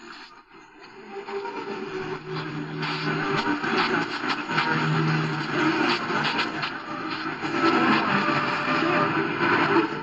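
C.Crane CC Radio EP Pro's speaker playing a weak AM medium-wave station buried in static and interference, with faint voices under the noise. It swells up over the first two seconds as the dial is tuned onto the signal, which is barely coming in.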